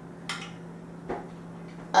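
Faint kitchen handling sounds over a steady low hum: a light click about a quarter second in and a soft knock near the middle, as utensils are handled by the gelatin dish.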